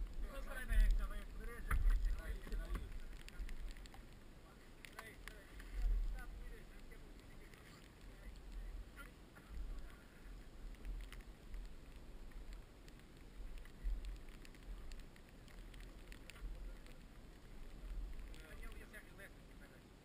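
Wind rumbling on the microphone in gusts, with a few honking calls in the first few seconds.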